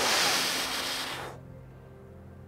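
A man blowing out hard through pursed lips, one forceful breath lasting about a second and a half that fades before stopping: the release of the 15-second recovery breath hold in Wim Hof breathing.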